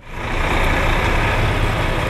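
Diesel coach bus engine running as the bus pulls away slowly, a steady low engine noise that swells in over the first half second.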